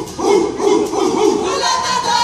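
Kapa haka group chanting loudly in unison in short rhythmic phrases, with one note held near the end.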